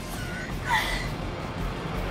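A woman crying in distress, with short gasping sobs, over soft background music.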